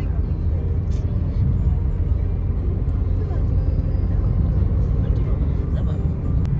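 Steady low rumble of engine and tyre road noise inside a diesel car's cabin while cruising along a highway.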